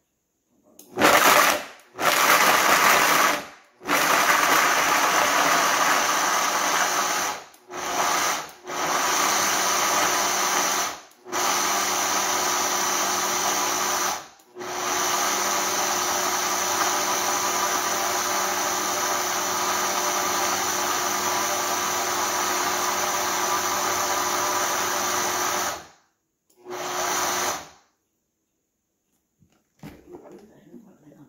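Countertop blender grinding chunks of fresh coconut meat into grated coconut. It is switched on and off in a run of short bursts, then run steadily for about eleven seconds, with one last short burst near the end.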